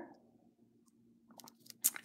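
Near silence, with a few faint short clicks about a second and a half in.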